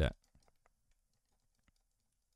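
End of a spoken word, then a few faint, short clicks from the computer keyboard and mouse being worked.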